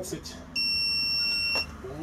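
A digital hanging crane scale beeping: one steady, high-pitched electronic tone about a second long that starts and stops abruptly.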